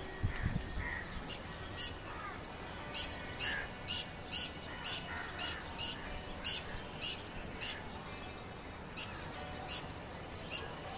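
Birds calling outdoors: a run of short, high chirps, about two a second, through the middle stretch, with a few lower calls in between. A brief low thump comes right at the start.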